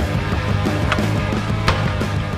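Background music with a steady low bass line and no speech. Two sharp knocks cut through it, about a second in and again near the end.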